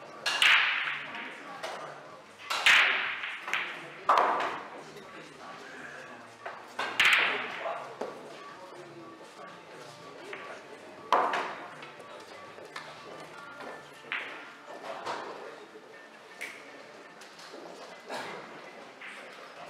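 Billiard balls clacking together in a pool hall: about ten sharp clicks, a few seconds apart and loudest in the first half, each ringing briefly in the large room.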